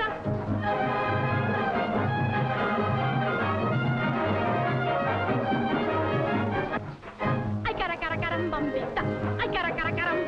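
Rumba played by a dance band, brass chords held over a steady bass beat during an instrumental break. After a brief drop about seven seconds in, a woman's singing voice comes back in over the band.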